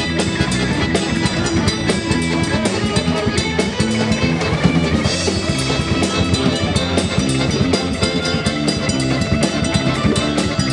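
Live band playing an instrumental passage: a drum kit keeping a steady beat under a button accordion, with guitar.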